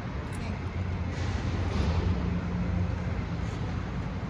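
City traffic rumble, with a vehicle engine's low hum swelling about a second in and easing off near the end.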